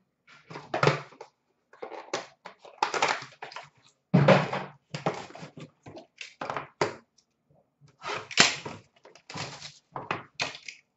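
Hands handling trading-card boxes and packaging on a glass counter: an irregular run of rustles, scrapes and knocks, with a heavier thump about four seconds in.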